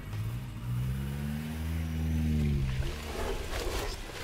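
A car engine pulling away: its pitch rises and then falls over about three seconds. A couple of sharp clicks near the end come from the store's back door opening.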